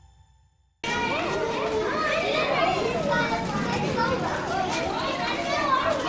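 Many children's voices chattering and calling out over one another, cutting in suddenly about a second in after a brief silence.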